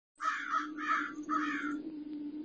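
Crow cawing three times in quick succession over a low steady drone.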